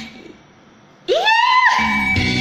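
Backing music cuts off and, after about a second of quiet, a high-pitched vocal whoop slides sharply upward and holds briefly. The music comes back in right after.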